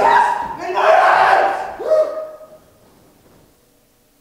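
Loud wordless vocal cries from a person, strained and shifting in pitch, ending in a falling cry about two seconds in, after which only faint room hum remains.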